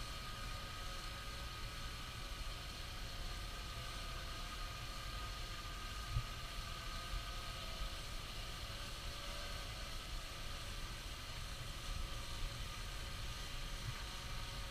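Steady outdoor background: wind rumbling on the microphone under a faint, slightly wavering motor hum, with a single soft knock about six seconds in.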